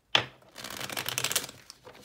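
A deck of tarot cards being shuffled by hand: a sharp snap, then about a second of rapid fluttering crackle as the cards run together.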